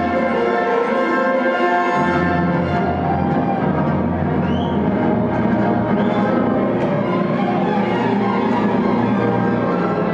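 Loud orchestral music with strings and timpani, played over a club sound system; a deep bass comes in about two seconds in.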